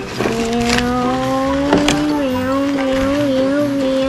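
A child imitating a vehicle engine with one long held hum, steady at first and wavering slightly in pitch later on. Two short clicks of plastic toys knock against each other.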